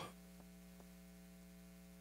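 Near silence: a steady low electrical hum, with two faint ticks in the first second.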